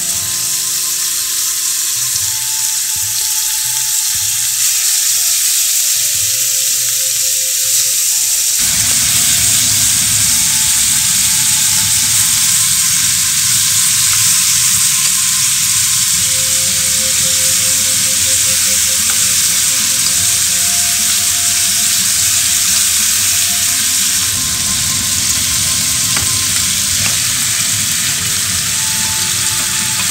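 Sliced pork sizzling in hot sesame oil in a pot as it is stir-fried and turned with chopsticks: a steady, loud frying hiss that becomes fuller and louder about a third of the way in.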